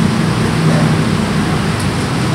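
Steady rushing background noise with a low hum underneath, with no distinct events.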